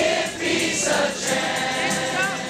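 A large crowd singing together, many voices blending in a group sing-along of a song.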